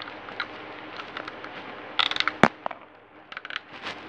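Plastic Lego pieces clicking and rattling as they are handled and pressed together, with scattered light clicks, a quick cluster of clicks about halfway through topped by one sharp click, and a few more clicks near the end.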